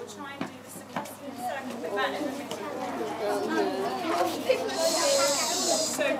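A group of schoolchildren chattering, many voices overlapping, with a couple of sharp claps early on and a long hiss near the end.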